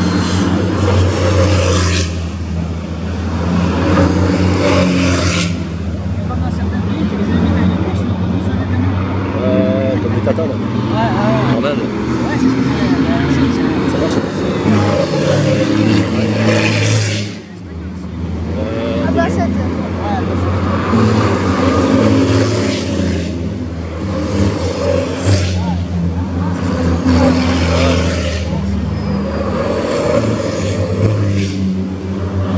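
Diesel engines of racing trucks running and driving past on the circuit. The sound swells several times as trucks go by, with a short drop in level about seventeen seconds in.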